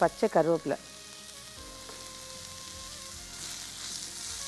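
Steady sizzle of jackfruit usili frying in a pan, growing a little brighter near the end.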